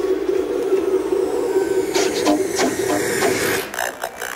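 Electronic music from a techno DJ set: a steady, buzzing noise drone with no beat. Sharp clicks come in about halfway, and the drone cuts off just before the end.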